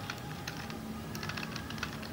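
Computer keyboard typing: a quick run of quiet, irregular key clicks.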